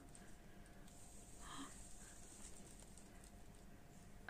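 Near silence: room tone, with one faint brief rustle about one and a half seconds in.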